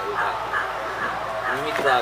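A man speaking, with a dog yipping in the background.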